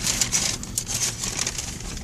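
Irregular crinkling and rustling close to the microphone, over a faint steady low hum from the idling car.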